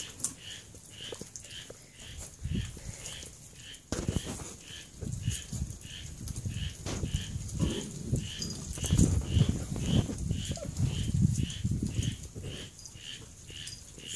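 Puppies growling and grumbling over pieces of raw chicken, low and rough, loudest in the second half. A faint high chirp repeats evenly two or three times a second in the background.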